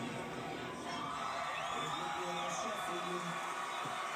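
Indistinct voices with faint music underneath, steady throughout, with no clear words.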